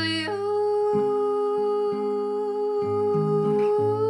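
A woman's voice holds one long wordless note over acoustic guitar chords, stepping up in pitch just after it begins.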